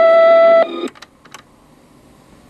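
A steady electronic tone, the held sound that ends a radio station ID, holds for about half a second and then cuts off suddenly. A few faint clicks and low tape hiss follow.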